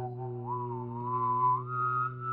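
A man whistling a slow melody while humming a steady low drone note at the same time. The whistled line climbs in two steps, about half a second in and again about a second and a half in, over the unchanging hum.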